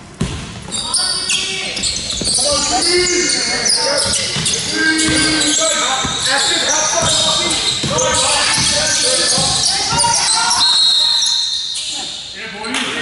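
Basketball game in a large echoing hall: sneakers squeaking on the wooden court and the ball bouncing, under players' and spectators' shouts. A referee's whistle sounds once, held for about a second, near the end.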